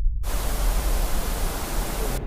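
A burst of hissing static, a TV/tape-noise transition effect, cutting in sharply a moment after the start, over a deep low rumble.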